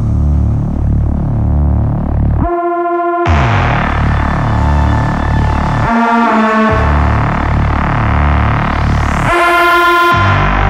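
Riddim dubstep: a heavy synth bass riff repeating in a steady pulse. The bass drops out briefly about two and a half, six and nine and a half seconds in, leaving a higher synth stab. A rising sweep builds near the end.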